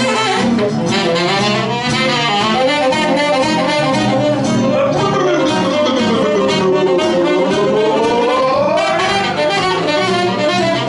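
Live swing jazz: a tenor saxophone plays the melody over guitar and bass accompaniment. In the second half it holds a long note that slides down and then climbs back up.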